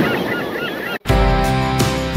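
Gulls calling in quick, short cries over the wash of surf. The sound cuts off abruptly about a second in, and music with a steady beat starts.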